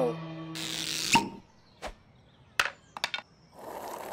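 Cartoon sound effects. A held musical tone ends in a sharp click about a second in. After that come a few separate mechanical clicks, and a brief swish near the end.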